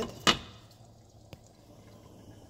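Glass pot lid set down on a pot: one sharp clink with a short ring just after the start, then a faint tick about a second later.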